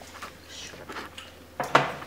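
Light kitchen handling sounds over a quiet room: a few soft clicks and clinks, with one brief louder sound near the end.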